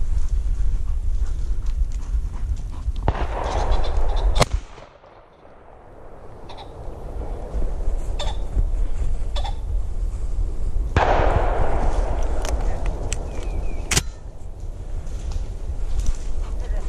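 Two sharp shotgun shots about ten seconds apart, the first about four seconds in, over a steady low rumble of wind on the microphone.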